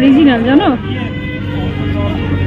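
A woman's voice sounds briefly, under a second, then gives way to a steady low hum with flat, unchanging tones.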